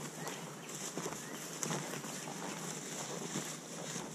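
Faint rustling and crackling of two people walking through tall grass and brush, over a steady high hiss.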